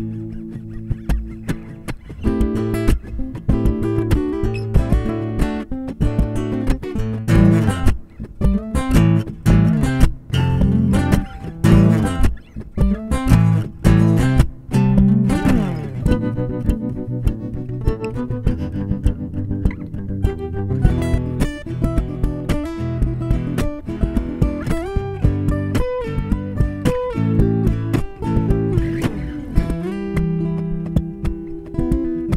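Layered guitar loops played on an Enya NEXG 2 smart guitar: plucked melodic riffs stacked over a repeating bass line, with one loop cutting to the next every several seconds and a downward pitch sweep about halfway through.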